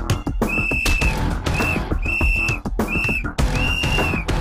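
A pea whistle blown five times, long and short blasts alternating, over a music track.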